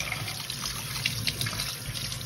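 Kitchen faucet running steadily, its stream splashing over a dressed quail held in the hands and into a stainless steel sink.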